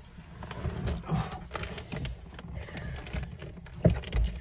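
Someone settling into a car's leather driver's seat: clothing rustling against the seat, small clinks and a jingle of keys, and a dull thump near the end.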